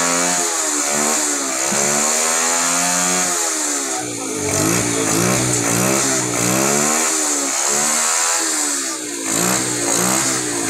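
Small single-cylinder motorcycle engine running and being revved over and over, its pitch rising and falling in long sweeps at first and then in quicker blips about twice a second.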